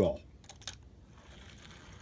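A die-cast Hot Wheels car rolling down an orange plastic track: two faint clicks about half a second in, then a faint rolling rustle of the small wheels on the track.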